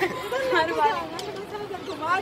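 People talking and chattering, with overlapping voices.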